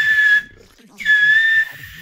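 Beatbox laser whistle: a breathy, high whistle made by pushing air under pressure through the tiny gap between the tongue and the top lip, with both lips drawn into the mouth. One whistle ends shortly after the start. A second, held for under a second, begins about a second in with a slight dip in pitch.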